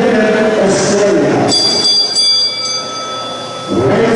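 A man's voice amplified through an arena PA. Between about a second and a half in and just before the end it gives way to a steady, high ringing of several tones held together for about two seconds.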